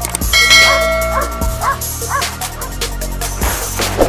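Electronic music with a steady bass. Over it, a dog barks about four times in quick succession in the first half.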